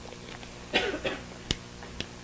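A person coughing twice in quick succession, followed by a single sharp click, over a low steady electrical hum.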